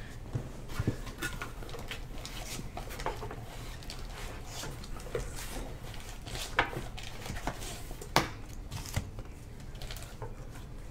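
Trading cards being handled on a table: soft rustling and sliding with scattered short, sharp clicks and taps at irregular intervals, the sharpest one near the end.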